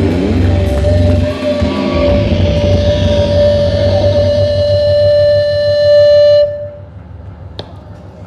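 A live rock band finishing a song: the drums and low end drop out just over a second in, leaving a held electric guitar note ringing steadily. The note cuts off sharply about six and a half seconds in, leaving low room noise.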